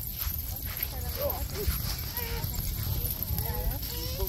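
Faint, scattered voices of people talking and calling out, over a low, uneven rumble.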